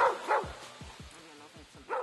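A dog barks three times: twice in quick succession at the start and once near the end. Underneath runs the tail of a hip-hop track with a deep bass-drum beat.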